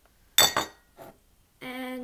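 A single sharp clink of a glass container knocking on the table, about half a second in. It is followed by a faint tick, and a voice begins near the end.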